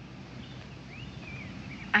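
Quiet outdoor background: a few faint, short bird chirps over a low, steady hum.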